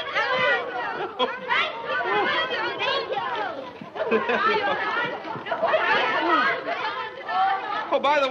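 Overlapping chatter of several voices talking over one another, with no single clear line of speech.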